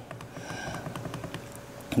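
Quiet room tone with a few faint soft clicks from the buttons of an Inkbird ITC-308S temperature controller being pressed.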